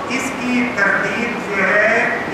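Speech: a man lecturing, his voice carrying on without a break.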